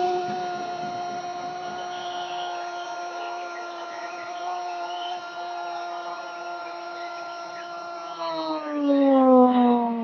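A sports commentator's long drawn-out goal cry, one sustained vowel held on a steady pitch for about eight seconds, then sliding down and getting louder before it breaks off.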